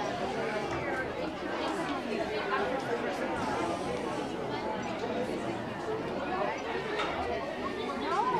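Audience chatter: many voices talking at once in a steady babble, with no single voice standing out.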